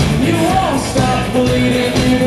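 Live rock band playing, with a male voice singing a held, gliding melody over electric guitar and drums.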